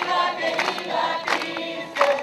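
A crowd singing a song together, voices in unison, with hand clapping on the beat about every two-thirds of a second.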